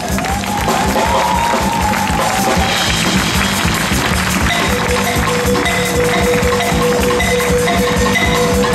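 Live Afro-Malian band playing: drum kit and electric bass under a balafon (West African wooden xylophone with gourd resonators) and tenor saxophone. A gliding melodic phrase runs for the first three seconds, then a single high note is held from about halfway.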